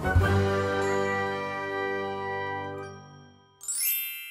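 A bright chime-like chord from a logo jingle rings out and slowly fades. Near the end a short rising sparkle of high tones sweeps up as the title appears.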